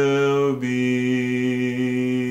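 A man singing, holding a long sustained note that steps down in pitch about half a second in and then holds steady. This is the drawn-out closing note of the song.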